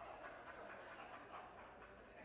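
Near silence with a faint, indistinct murmur of voices in a large chamber.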